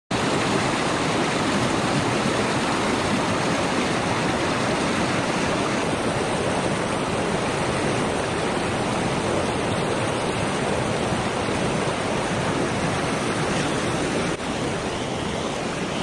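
Fast river current churning through a shallow riffle, a steady rush of water that drops a little in level near the end.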